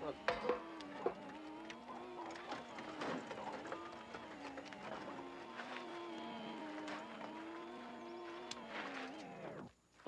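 Electric wheelchair motor whining as it drives, its pitch wavering up and down with the speed, with small clicks and knocks over it; it cuts off just before the end as the chair stops.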